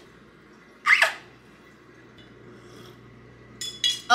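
A single short, loud squeak about a second in as the plastic stevia container is handled. Near the end a metal spoon clinks against a glass mason jar as the coffee is stirred, over a faint steady low hum.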